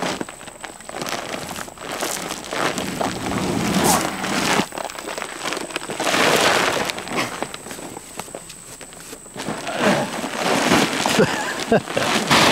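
Large paper sacks of deer corn rustling and crinkling while a man carries three of them, one held in his teeth, with footsteps through grass. Muffled voice sounds from the man come in near the end.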